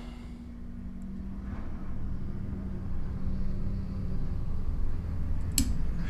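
Low steady rumble with a faint hum that stops about four seconds in, and a single sharp click near the end.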